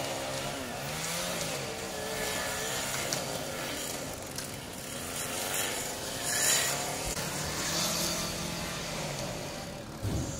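Fire apparatus engine running at the fire scene, its pitch wavering up and down, with a brief louder burst of hiss about six and a half seconds in.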